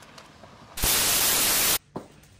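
A burst of loud static-like white noise, about a second long, starting just under a second in and cutting off suddenly: a sound effect laid over the cut between two scenes.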